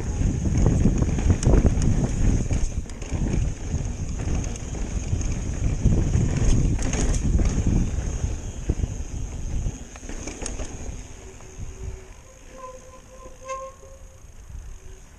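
Mountain bike rolling fast over bare sandstone slickrock: a heavy rumble of tyres and wind buffeting the camera microphone, with scattered knocks and rattles from the bike. It drops much quieter for the last few seconds as the bike slows.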